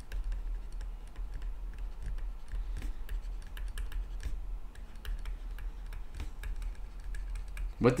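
Light, irregular ticks and taps of a stylus on a tablet screen as words are handwritten, over a steady low hum.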